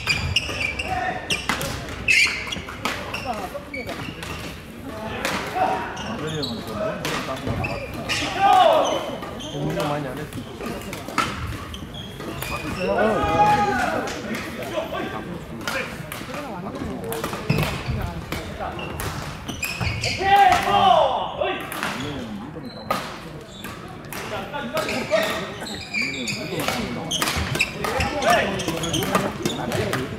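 Badminton in a large sports hall: frequent sharp knocks of rackets striking shuttlecocks from several courts, mixed with players' and onlookers' voices, all echoing in the hall.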